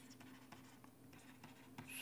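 Very faint ticks and scratches of a stylus writing on a pen tablet, over a low steady hum.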